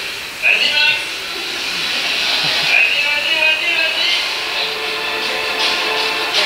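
Soundtrack of a short film played over a hall's loudspeakers: music with a voice in it, running continuously.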